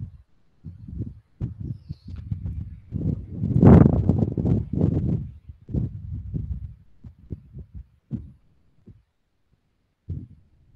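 Low thumps and rumbling noise picked up by an open microphone on an online call, coming in irregular bursts with a louder stretch a little past the middle.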